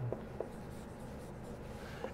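Dry-erase marker writing figures on a whiteboard: faint strokes, with two brief squeaks in the first half second.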